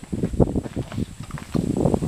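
A bear eating watermelon: wet, irregular crunching and chewing, busiest about half a second in and again near the end.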